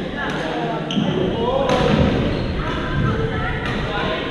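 Badminton rackets hitting a shuttlecock in a rally: a few sharp hits about one to two seconds apart, echoing in a large gym hall, over background voices from the courts.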